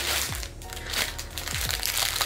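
Thin plastic packaging bags crinkling and rustling in the hands as they are handled.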